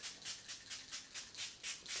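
A fine-mist spray bottle being pumped rapidly, giving short hissing sprays about five times a second as liquid primer is misted onto a section of hair.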